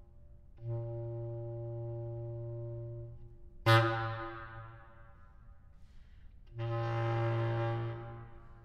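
Bass clarinet playing the same low note three times: a long held tone, then a sudden loud accented attack that dies away over about a second, then another held tone near the end.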